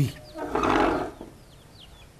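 A man's short, gruff, exasperated huff or grunt, lasting about half a second shortly after the start.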